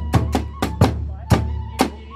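Kagura hayashi ensemble playing: quick, repeated strikes on the large taiko drum with a bamboo flute holding a high note that shifts pitch near the end.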